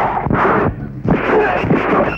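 Dubbed film fight sound effects: several loud, sharp punch hits in quick succession.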